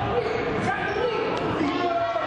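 Basketball bouncing on a hardwood gym floor while voices call out across the gym.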